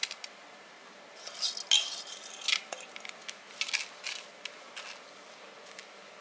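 Fingers stirring soaked raw rice in a plastic colander: irregular light clicks and grainy rustles of wet rice grains, from about a second in until about five seconds.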